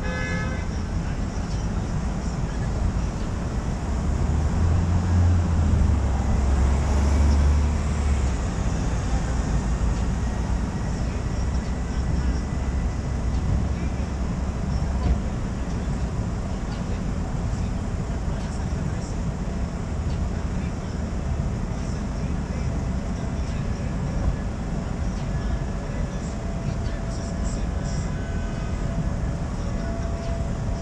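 City street traffic heard from a car's roof: a steady low rumble of engines and passing vehicles, swelling heavier a few seconds in, with a short pitched toot like a car horn right at the start.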